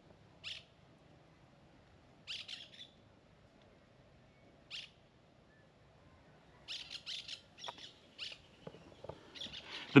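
Small birds chirping in short, high-pitched calls over a quiet background. There is a single call about half a second in, a quick run of notes just after two seconds, one near five seconds, and a denser string of chirps from about seven seconds on.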